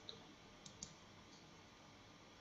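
Near silence, broken by three faint computer-mouse clicks: one just after the start and two close together a little before the middle.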